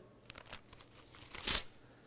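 Pages of a Bible being turned: a few soft paper rustles, with a louder one about one and a half seconds in.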